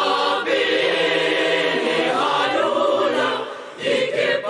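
Mixed school choir of boys and girls singing a sustained passage in several-part harmony; the singing dips briefly near the end, then comes back in.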